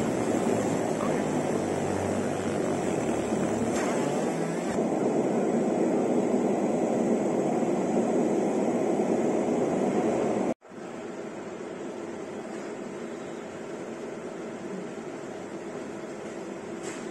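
A 60W JPT MOPA fiber laser marking machine running while deep-engraving a brass plate: a steady mechanical hum with a faint high whine. About ten seconds in the sound cuts off abruptly and a quieter steady hum follows.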